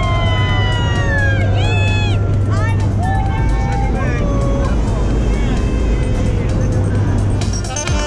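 Several people yelling and whooping with excitement, long cries sliding up and down in pitch, over the steady drone of the jump plane's engine inside the cabin. Music comes back in near the end.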